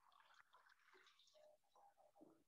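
Near silence: faint room tone with scattered, indistinct faint sounds.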